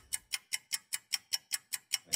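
Steady clock-like ticking, about five to six sharp ticks a second, at an even pace.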